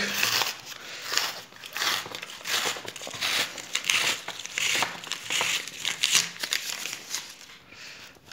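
A large kraft-paper USPS Utility Mailer envelope being pulled and torn open by hand, the stiff paper crinkling and ripping in irregular strokes.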